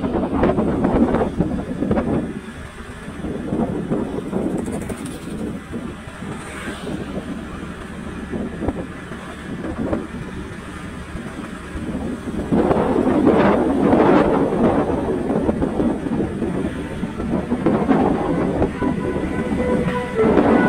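Riding a motorcycle: wind buffeting the microphone over the rumble of the engine and tyres on the road. It gets louder from about twelve seconds in.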